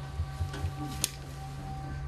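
A steady hum with a few soft knocks and one sharp click about halfway through, as small parts are handled against a sheet-metal housing.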